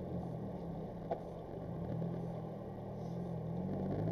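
A car's engine running at low speed with road noise, heard from inside the cabin, its low tones shifting gently as it drives. A single short click about a second in.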